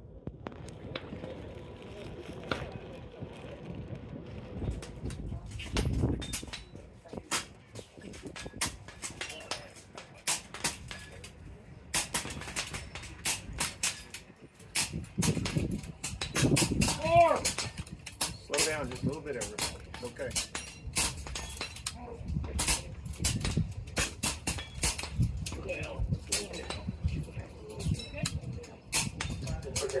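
Air rifles firing on a range: many sharp cracks in irregular succession, with voices talking in the background.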